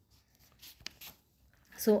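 A few faint, brief rubbing sounds and one small click in a pause, then a woman's voice starts again near the end.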